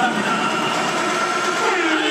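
Dance music from the arena's speakers: a held chord with no beat, with a sung melody coming in near the end.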